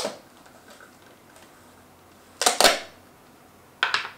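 A screw-top jar being opened by hand, heard as a few short scraping, rustling handling noises. The loudest is a double one about two and a half seconds in. Near the end there is a sharp knock as the lid is set down on the wooden table.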